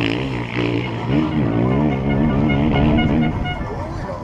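Enduro motorcycle engine running at speed, its pitch rising and falling with the throttle. It drops away a little after three seconds in.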